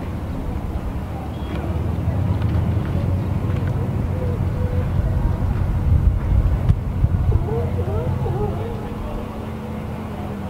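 An engine idling steadily, with faint voices about seven seconds in.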